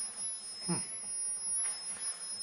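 Steady high-pitched electronic whine, a pair of close tones with a fainter higher one, from a pulsed high-frequency circuit driving LEDs. A man's short 'hm' comes a little under a second in.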